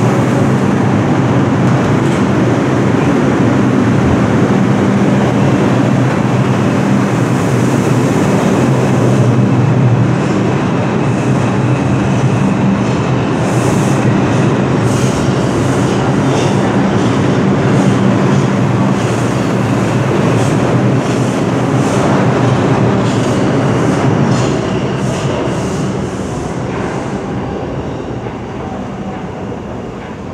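R142 New York City subway train running through the tunnel, heard from on board: a loud, steady rumble, with wheels clicking over rail joints in a rhythmic run through the middle. In the last few seconds the sound eases off as the train slows down.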